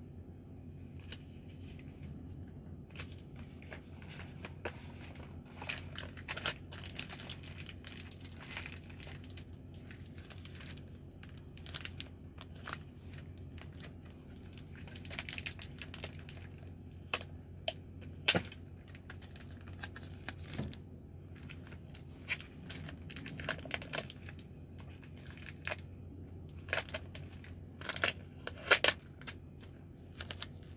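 Paper instruction booklets and plastic packaging being handled: rustling and crinkling with scattered small clicks, the sharpest about halfway through, over a steady low hum.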